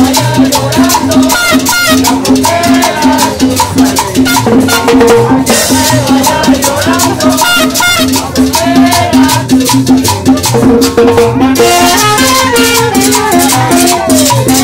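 Live cumbia band playing at full volume: drums, cymbals and rattling percussion over a steady, repeating bass line with melody on top.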